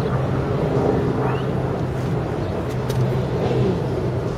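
A steady, low mechanical hum, like an engine running, with no change in pitch.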